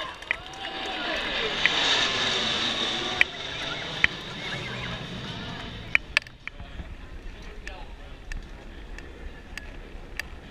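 Formation of military jets flying past overhead: the jet noise swells to a peak about two seconds in and dies away by about six seconds, over crowd chatter.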